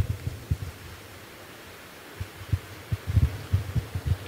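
Irregular soft, low thumps and bumps of movement and handling close to the microphone, a few at the start, then a quieter stretch, then more in the second half.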